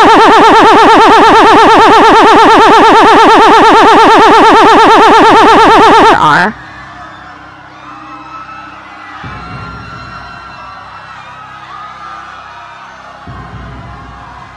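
Loud, high-pitched vocal sound effect from a giant cartoon monster, a rapidly wavering laugh that lasts about six seconds and cuts off suddenly. Quieter background music follows.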